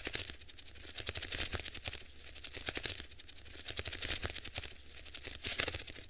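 A dense, rapid crackling rattle of irregular clicks over a low hum, starting abruptly and cutting off suddenly: an edited-in sound effect under an animated end card.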